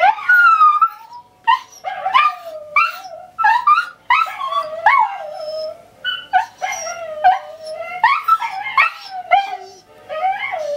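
Scottish terriers howling in a run of short, wavering, rising-and-falling calls mixed with yips, one after another with hardly a break.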